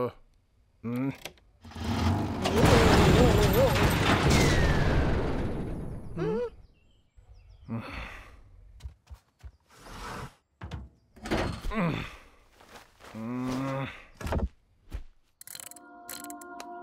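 Cartoon soundtrack: the animated characters make short wordless voice sounds, grunts and murmurs, several times, with a loud noisy sound effect lasting about three seconds near the start.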